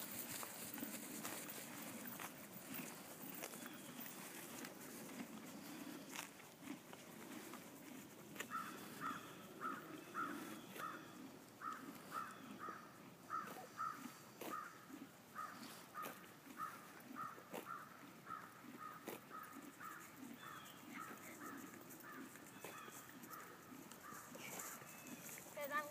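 A bird calling over and over in the background: short, clear, evenly spaced notes about twice a second, starting about eight seconds in and running on, over faint open-air noise.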